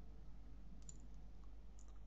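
Two faint computer mouse clicks, about a second apart, over a low steady hum.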